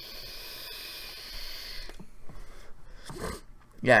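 A long draw on a Joyetech vape pen: a steady airy hiss for about two seconds, followed a little later by a short breathy puff.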